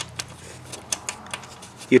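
Scattered sharp clicks and light metal taps, irregular and about five a second, from hand tools and screws while the centre console's mounting screws are taken out of the car's floor.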